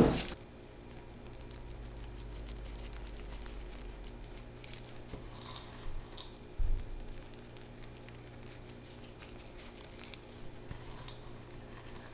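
Quiet room tone: a steady low hum, with a couple of faint small knocks about six seconds in.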